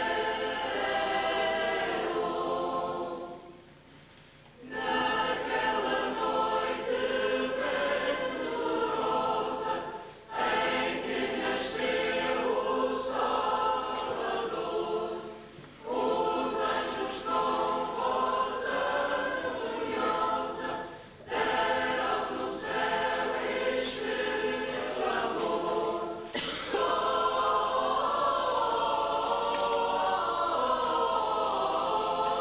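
Mixed church choir of men's and women's voices singing, phrase after phrase, with short breaks between phrases and the longest pause a few seconds in.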